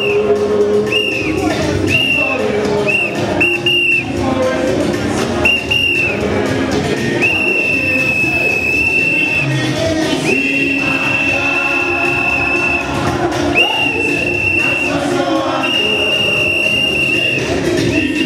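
A plastic whistle blown in a run of short toots, then in four long held blasts, over loud music with singing.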